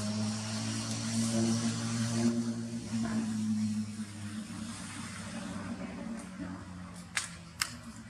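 A steady low hum like a distant engine, fading away after about four seconds, with a faint high hiss. Two sharp clicks come near the end.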